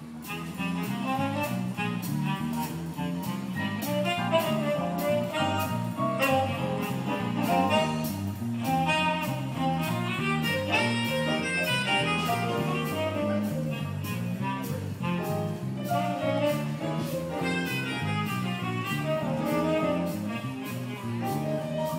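Jazz music with a walking bass line of stepping low notes, a steady beat and a melody line above, starting abruptly.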